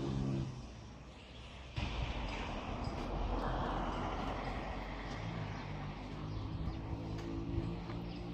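A motor vehicle going by on a nearby road: its noise comes up suddenly about two seconds in, swells and then slowly fades.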